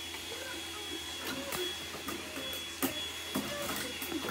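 Computer DVD drive taking a disc: a few sharp clicks over a faint steady mechanical whir as the disc is loaded into the tray.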